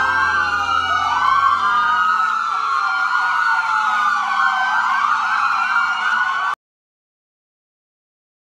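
Several police car sirens wailing at once, their rising and falling tones overlapping, until they cut off suddenly about six and a half seconds in.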